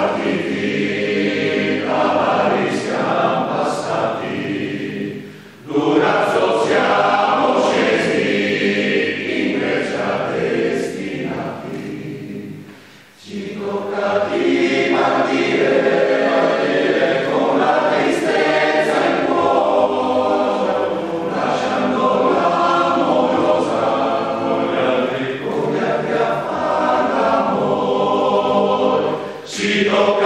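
Men's alpine choir (coro alpino) singing an alpini song a cappella in several voice parts, with brief breaks between phrases about five and thirteen seconds in.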